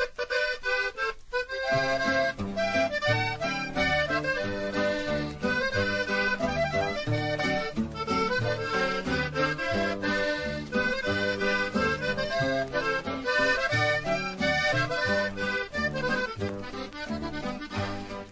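Norteño music starting up: an accordion plays the melody from the first moment, and a bass line comes in about a second and a half in.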